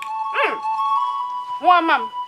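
Background film score of held, bell-like tones. Over it come two short pitched calls, one swooping down about half a second in and one rising near the end.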